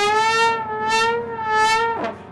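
Trombone holding one long, high note that wavers slightly in pitch and swells brighter three times, as part of a free-jazz improvisation.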